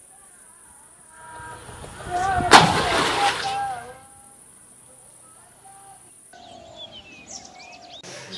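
A man's excited vocal outburst, peaking in a single sharp, loud hit about two and a half seconds in.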